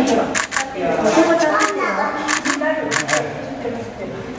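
Onlookers chattering, cut by about four sharp clicks, most of them in quick pairs, typical of camera shutters.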